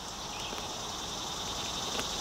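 Steady high-pitched trilling of an insect chorus, such as crickets, in a summer field.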